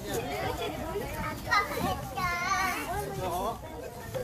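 Children's voices chattering and calling out, several at once, with a loud call about one and a half seconds in and a high, wavering call a little after two seconds.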